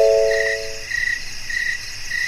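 Crickets chirping steadily, about two chirps a second. Over them, a music box chord rings and fades away within the first second.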